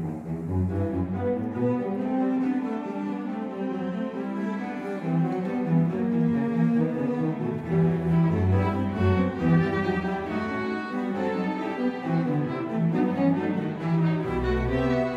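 Live string orchestra of violins, violas, cellos and double bass playing a neo-baroque piece, with moving bass notes under busier upper parts.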